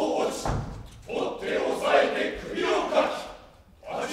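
Several men shouting battle cries together in short bursts during a staged fight, with a low thud about half a second in.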